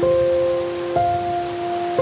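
Soft piano music, with a new note struck at the start and again about a second in, over the steady rush of a stream running over rocks.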